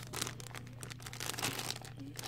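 Clear plastic packaging crinkling as it is handled, a quick irregular run of small crackles.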